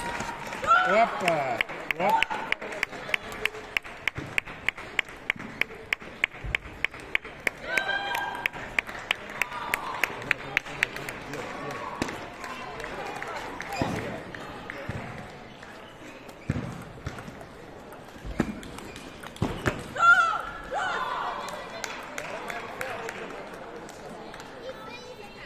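Table tennis ball tapping in an even run of about four sharp clicks a second for some nine seconds, with shouts and talk in a hall around it and a few dull thuds later on.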